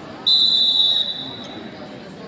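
A wrestling referee's whistle: one shrill, steady blast of about a second that starts a quarter second in and then tails off, stopping the action on the mat.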